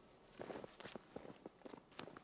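Footsteps in snow: a series of steps as a person walks past.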